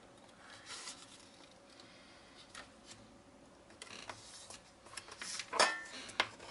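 Faint paper rustles and light handling clicks as a strip of kraft cardstock is folded in half and creased by hand, with a louder brief sound near the end.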